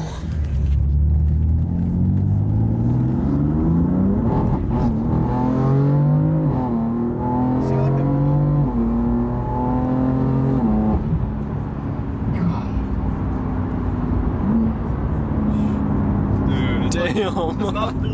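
BMW F80 M3's stage 2 tuned S55 twin-turbo straight-six, heard from inside the cabin, pulling hard through the gears: the pitch rises, drops at each quick dual-clutch upshift, and rises again. About 11 s in it settles into a steadier cruise.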